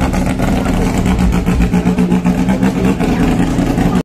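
Tuned Suzuki G13B 1.3-litre four-cylinder engine in a modified Maruti Zen Steel running steadily at low revs, its note pulsing evenly and loudly.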